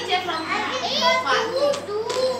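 Young children's high voices talking and calling out, several overlapping.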